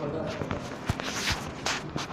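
Handling noise from a mobile phone being moved about: a few sharp knocks and short rustles, with voices in the background.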